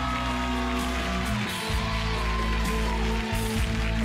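Instrumental break in a romantic ballad: the backing band holds sustained chords over a steady bass, with no singing.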